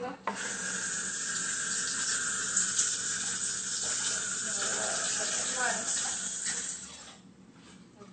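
A steady rushing hiss that starts just after the beginning, holds evenly for about six seconds, then fades out near the end.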